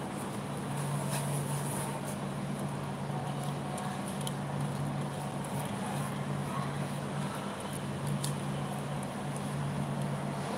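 A steady low hum over a constant hiss of background noise, with a few faint clicks.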